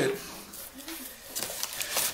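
Plastic bubble-wrap packing rustling and crinkling as hands reach into a cardboard shipping box, with a few short crackles in the second half.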